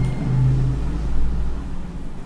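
A steady low hum with a droning tone in the low range, background noise under the recording.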